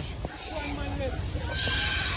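People shouting a few drawn-out calls at a distance, over a steady low rumble.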